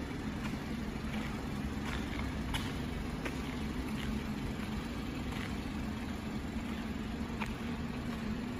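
Steady low hum of a 2018 BMW X3 xDrive30i idling, with a few faint footstep-like clicks at irregular intervals.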